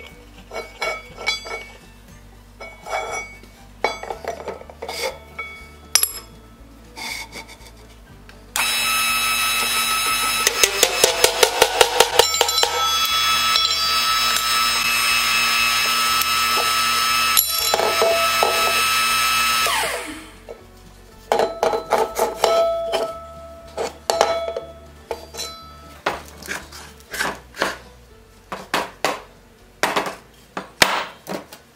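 A motor-driven shop press runs loudly for about eleven seconds as its ram pushes a metal bearing boxing into a wooden wagon hub. It then cuts off with a falling whine. Before and after, scattered knocks and clinks of the metal parts and hub being handled.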